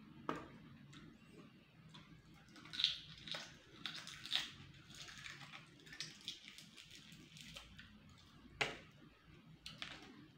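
A person chewing and making mouth noises while eating by hand, with irregular soft clicks. The sharpest come about three, four and a half and eight and a half seconds in.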